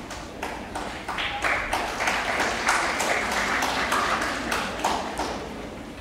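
Audience applauding, with sharp single claps standing out from the crowd; the applause swells about a second in and dies down near the end.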